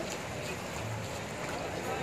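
Floodwater sloshing and splashing as people wade through it, with indistinct voices in the background.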